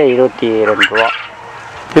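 A man talking, with a flock of quail chirping in the background; a short high chirp comes about a second in, and the second half is quieter.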